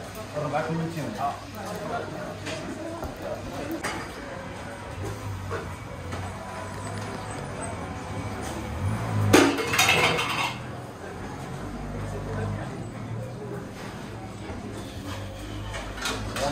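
Restaurant ambience: indistinct voices with occasional clinks of dishes and glass, and a louder burst of sound about nine seconds in.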